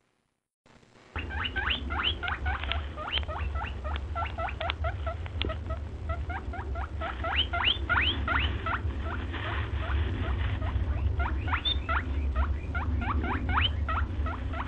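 A small animal's rapid squeaky chirping: short rising calls, several a second, over a low steady hum. They start about a second in, after a brief silence.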